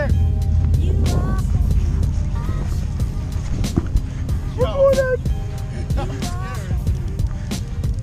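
A pickup truck engine idling, a steady low rumble, under background music with a beat. Brief voices come in about five seconds in.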